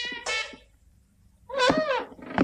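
A brass swing music cue plays its last note and stops about half a second in. After a short hush, a cat meows once near the end.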